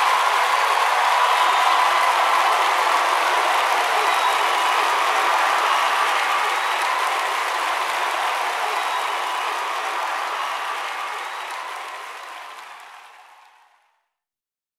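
Live audience applauding and cheering at the end of a song, fading out to silence over the last few seconds.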